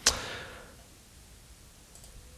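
A single sharp click, followed by a short swish that fades out within about a second.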